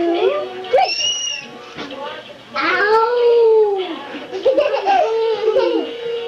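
Young children squealing and making playful wordless calls, including a high squeal about a second in and a long drawn-out call near the middle.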